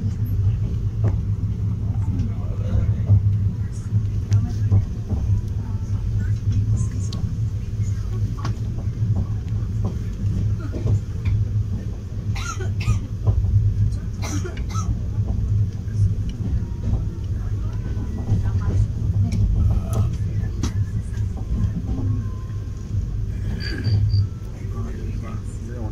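Steady low rumble of a moving express train, heard from inside a passenger coach, with a few sharp clicks and knocks about halfway through.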